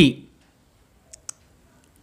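Two brief, faint clicks a little over a second in, close together, during a quiet pause in speech.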